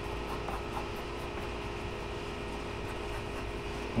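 Steady background hum and hiss with a faint steady tone, the sound of a running fan or air-conditioning unit; no distinct mixing scrapes stand out above it.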